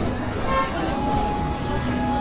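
Busy street ambience of voices and background noise, with a long steady tone starting about half a second in.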